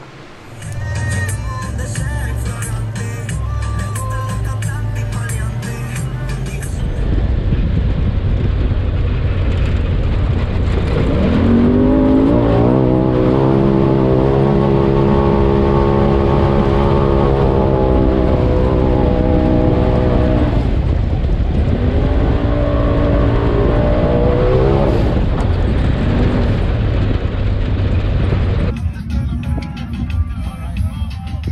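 Music with a beat, then the engine of a turbocharged Polaris RZR side-by-side rising in revs under acceleration about eleven seconds in, holding a steady drone for several seconds, and pulling up again a little later, with the music running underneath.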